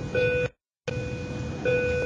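A steady pitched tone in two stretches, broken by a brief cut to total silence about half a second in, over a low background rumble.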